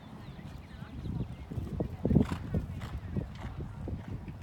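A horse's hoofbeats cantering on the sand footing of an arena, a run of dull thuds with the heaviest about two seconds in.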